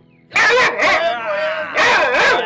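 Dog barking loudly, three barks, the first about a third of a second in.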